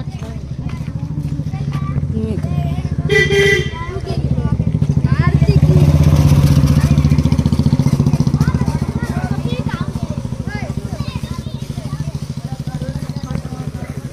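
Motorcycle engine running as it comes up close, passes at its loudest about six seconds in, and then pulls away and fades. A brief high-pitched tone sounds about three seconds in.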